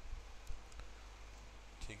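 Quiet room tone with a low steady hum, broken by a faint click about half a second in and a weaker one shortly after; a man's voice starts near the end.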